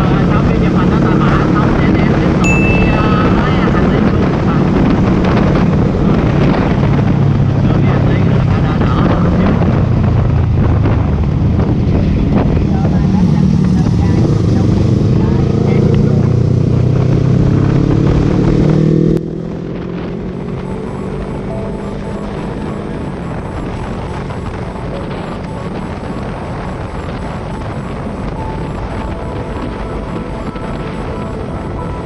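On-board sound of a Yamaha YZF-R3 sportbike at speed: heavy wind rush on the microphone over the engine, whose note climbs steadily as it accelerates. About two-thirds of the way through, the sound drops suddenly to a quieter, steadier engine and wind noise.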